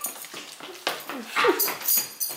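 Brief whimpering, squeaky vocal sounds, a couple of short pitch slides about halfway through, among soft scattered knocks.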